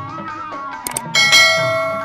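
Instrumental music with a sliding, held melody over a low beat; just before a second in come two quick clicks, then a bright bell strike that rings on and fades. The clicks and bell are a subscribe-button click and notification-bell sound effect.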